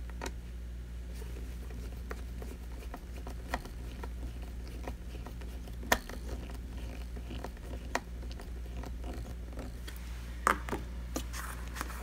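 Scattered clicks and knocks of plastic parts being handled and pressed into place on the underside of a robot vacuum, the sharpest about six seconds in. A steady low hum sits underneath.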